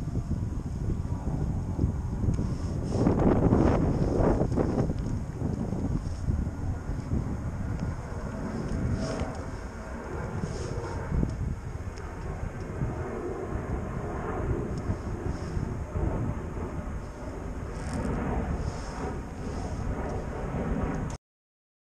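Wind buffeting the microphone: an uneven low rumble that rises and falls with the gusts, loudest about three to five seconds in.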